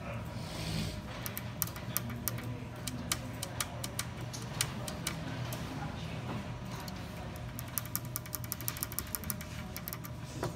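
Small slide switches on an Altera DE2-115 FPGA board being flicked by a finger: a series of sharp clicks at uneven spacing, with a quick run of them near the end, over a steady low hum.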